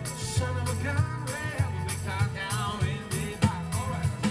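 A man singing into a microphone over keyboard-led music, with a steady bass line and a drum beat.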